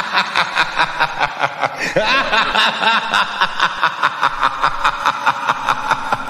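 A voice laughing "ha ha ha ha" in a fast, unbroken string of short pulses, about four or five a second, with a fresh run of laughter starting about two seconds in.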